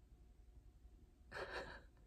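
Mostly quiet room tone, then a single short breath of about half a second near the end.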